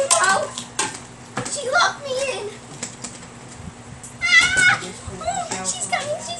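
A child's voice making sounds without clear words, with a high squeal about four seconds in, and a few sharp clicks from a door handle being tried on a stuck door.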